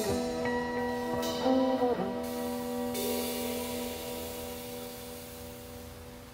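Jazz quartet's closing chord: trombone holding a long final note over sustained band tones, with a cymbal wash coming in about three seconds in. The trombone drops out partway and the chord and cymbal ring down, fading as the tune ends.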